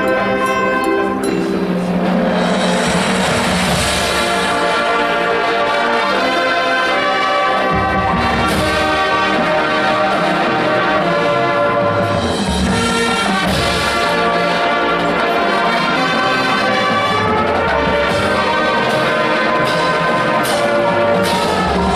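High school marching band playing: brass holding full sustained chords over the front-ensemble keyboards, with low drum hits now and then.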